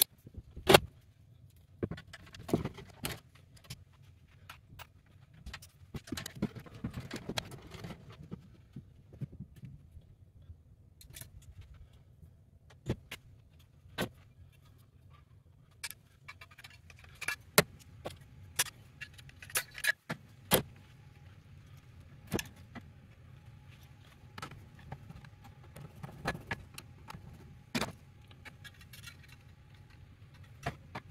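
Hands at work on an open electrical sub-panel, installing breakers and branch-circuit cable: scattered sharp metallic clicks and clinks of breakers, cable and tools, with bouts of rustling as the cable is handled.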